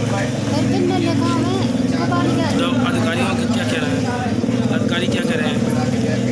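People talking over a steady low hum, like a running engine.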